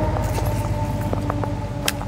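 Lew's Team Lite fishing reel cranked steadily, its gears giving an even whir with light clicks scattered through it as a spinnerbait is retrieved.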